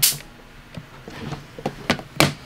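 Plastic storage tub and lid being handled: a short noisy burst at the start, a few light clicks, then a sharp knock near the end.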